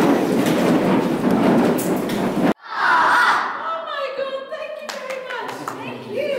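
A large group of children chattering at once in a big hall. The sound cuts off abruptly partway through, and then a woman speaks.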